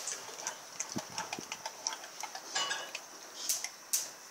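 A Rottweiler chewing and gnawing on a raw pork shoulder: a run of irregular clicks and smacks from its jaws and teeth on the meat and bone, with a couple of louder clicks near the end.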